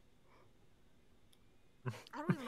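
Near silence: faint room tone, with one small sharp click a little after halfway through and a voice starting just at the end.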